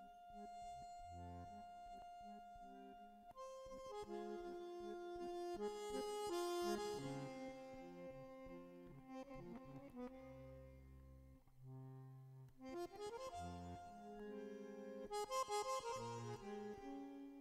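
Bandoneon playing a slow passage: a long held note, then a run of sustained, shifting chords with deep bass notes entering about ten seconds in.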